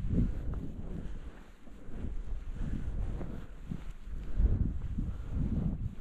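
Wind buffeting the microphone, an uneven low rumble that swells and dips.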